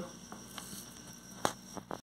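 Quiet room tone with a low steady hum and a few light clicks, the sharpest about a second and a half in.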